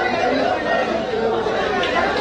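Many people talking over one another: indistinct crowd chatter in a busy room, no single voice standing out.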